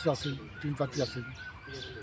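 Small birds chirping in the background, behind a man's few short, quiet words.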